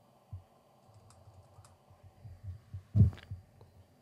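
Faint tapping and clicking of a computer keyboard being typed on, with a louder thump about three seconds in.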